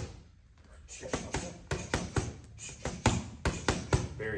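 Boxing gloves smacking into focus mitts in a quick-hands jab-cross-uppercut drill: after a pause of about a second, a fast run of sharp smacks, roughly three or four a second.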